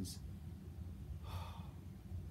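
A man sighs, one breathy exhale about a second in, right after the last word of "I can't believe how bad it is"; a low steady hum runs underneath.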